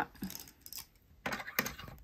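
Light clicks and rattles of a spool of thread being handled and set onto the plastic thread pin of a portable bobbin winder, a small cluster of them about a second and a half in.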